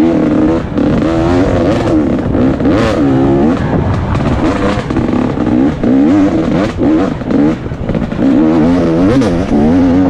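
2017 KTM 250 XC-W two-stroke dirt bike engine revving up and down repeatedly with the throttle, its pitch rising and falling every second or so. A few brief knocks are heard along the way.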